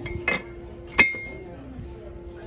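A hard ceramic or glass shelf item is handled: a short scrape, then one sharp clink about a second in, ringing briefly before it dies away.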